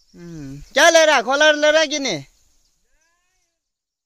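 A person's voice calling out: a short lower falling sound, then a loud, high-pitched, wavering call lasting about a second and a half.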